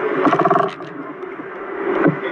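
A person's voice, brief, for about half a second near the start, then fainter background noise of an indoor shopping arcade.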